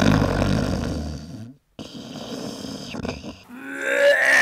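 Non-speech sounds from a person's voice, with a short silence about a second and a half in. Near the end comes one long vocal sound that slides down in pitch.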